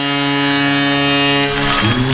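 A ballpark home-run horn sounding one long, steady, deep blast that cuts off about a second and a half in.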